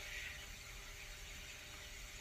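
Faint steady hiss with a low hum: the recording's background noise.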